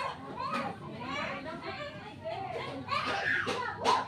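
Children's voices talking and calling out, with a sharp click near the end.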